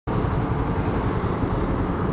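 A 150 cc single-cylinder motorcycle engine idling steadily, with an even low pulse.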